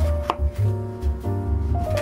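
Background music with held notes and a pulsing bass, over a knife cutting through cabbage leaves onto a plastic cutting board near the start.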